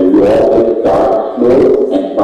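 A man's voice speaking continuously, relayed from a video call through the hall's loudspeakers.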